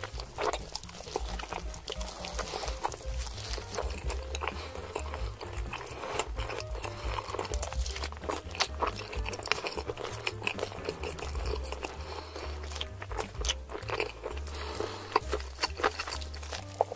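Wet, close-miked chewing and mouth smacking of rotisserie chicken, with sharp clicks, over background music that carries a steady pulsing bass line.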